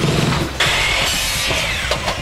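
A power tool runs over background music. A whining, hissing cut starts about half a second in and stops just before the end.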